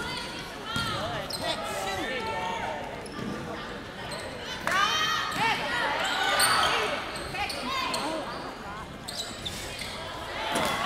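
Basketball game sound on a hardwood court: sneakers squeaking in short, rapid chirps, a basketball bouncing, and shouting voices of players and spectators echoing in the gym.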